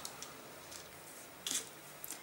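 Faint handling sounds at a craft table: a few small ticks and one short scuff about one and a half seconds in, as hands move a plastic glue bottle over a strip of baking paper.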